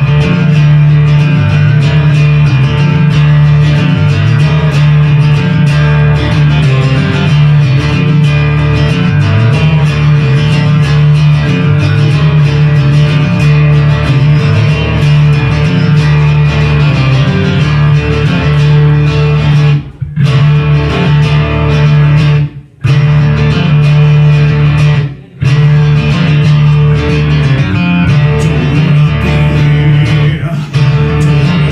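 Live instrumental passage on amplified guitar and electric bass. The band stops dead three times for a moment about two-thirds of the way through, then plays on.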